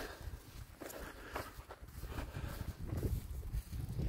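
Soft footsteps of a person walking barefoot on short grass: a few faint, irregular steps under a low rumble.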